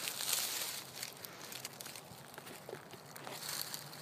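Faint rustling with a few light clicks and ticks, the small noises of someone moving about among tree branches and dry woodland litter.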